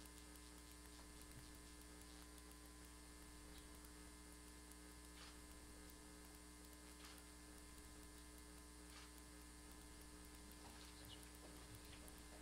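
Near silence: a steady, faint electrical mains hum, with a few very faint clicks.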